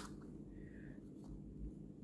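Faint handling noise of fingers turning a small white plastic motion sensor and its detached round mount, with a brief light scrape under a second in, over a low steady hum.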